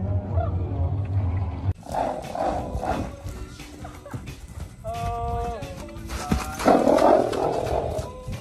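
Music with a steady low beat cuts off abruptly about two seconds in. Then a chestnut Arabian mare snorts repeatedly, the loudest snort coming near the end.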